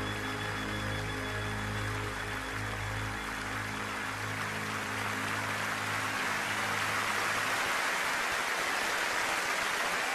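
Orchestra with solo violin holding a closing chord, its low sustained notes dying away about three-quarters of the way through, while audience applause swells.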